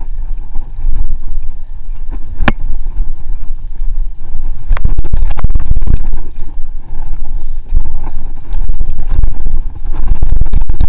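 Wind buffeting the camera microphone over the rumble of knobbly tyres on a 1994 GT Zaskar LE hardtail mountain bike riding fast down a dirt trail. The bike clatters and rattles over bumps, with one sharp clack about two and a half seconds in and a run of hard knocks around the middle.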